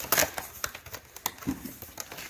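A cardboard shipping box being handled by hand: a few scattered light taps and knocks of cardboard flaps and plastic wrap, with a duller thump about one and a half seconds in.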